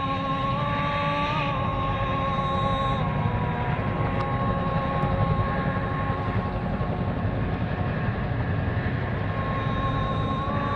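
Intro drone of a rap remix: a steady, dense low rumble under a held chord of sustained synth tones that shift slightly in pitch a couple of times early on.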